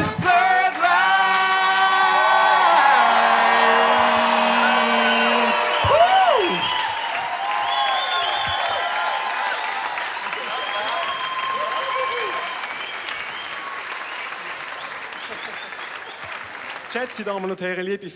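A band with singers ends a song on a long held closing chord that steps down in pitch. About six seconds in, the audience breaks into applause and cheering, with whoops and whistles, which slowly dies away. A man starts speaking near the end.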